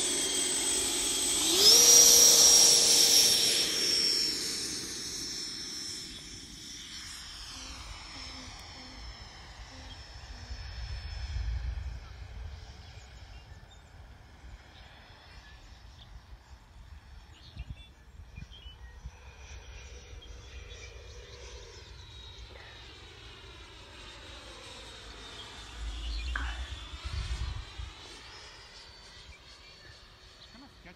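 Electric ducted fan of a Freewing 90mm F-16 RC jet spooling up to full throttle with a rising whine about a second and a half in, loudest just after, then fading as the jet takes off and climbs away. Its fainter whine then comes and goes, sliding in pitch as it passes, with two brief low rumbles near the middle and near the end.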